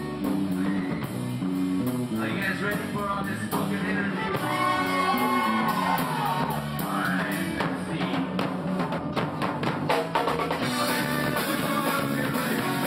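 Live ska band playing loud: drum kit, guitar and bass under sliding horn lines. A quick run of drum strikes comes about eight to ten seconds in.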